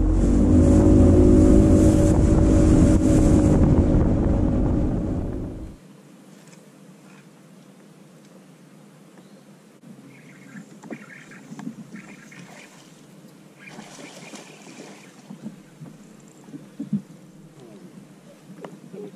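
A boat motor running steadily, with heavy wind rumble on the microphone. It cuts off abruptly about six seconds in, leaving low quiet outdoor sound with a few faint small noises.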